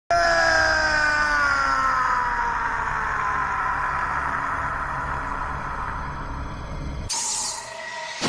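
A man's long drawn-out scream of pain from an anime dub. Its pitch sinks slowly as it fades. About seven seconds in it cuts off abruptly and a sudden hissing whoosh effect takes over.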